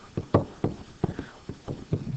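Stylus knocking and scraping on a digital writing surface while handwriting: a string of short, irregular knocks, about five a second.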